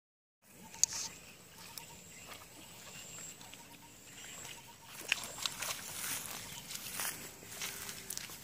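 Outdoor ambience with scattered sharp clicks and taps: a loud click about a second in and a run of them in the second half, over a faint steady high-pitched tone.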